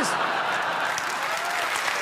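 Theatre audience laughing and applauding: steady clapping mixed with laughter.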